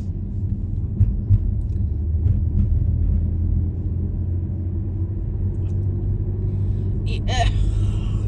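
Steady low rumble of a car driving on a paved road, heard from inside the cabin: engine and tyre noise, with two short knocks about a second in.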